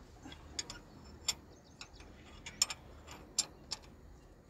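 Irregular sharp metallic clicks and clinks of a spanner working the mounting bolts of a Komatsu PC200 excavator's starter motor, about ten in four seconds with no steady rhythm.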